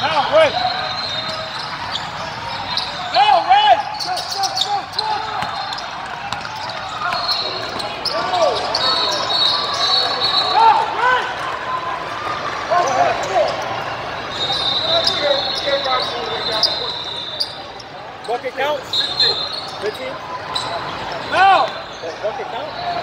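Basketball game sounds in a large sports hall: a ball bouncing on the court and sneakers squeaking in many short rising-and-falling chirps, with players calling out. The loudest bounces come around three to four seconds in and near the end.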